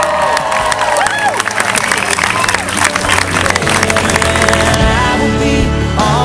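Wedding guests cheering and applauding, with a whoop near the start, over music. The clapping thins after about three seconds and the music carries on to the end.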